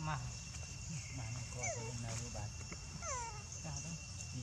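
Infant long-tailed macaque giving distress cries while held down for wound care: short calls that fall steeply in pitch, repeated about every second and a half.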